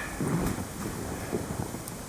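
Wind buffeting the microphone, an irregular low rumble with steady hiss.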